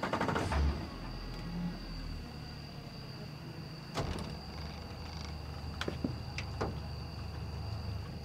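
A low steady hum with a knock near the start, a sharp click about four seconds in, and two lighter clicks a little later, from gear being handled on a boat deck.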